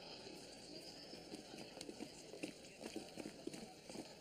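Faint, irregular clatter of steps on hard ground, several a second.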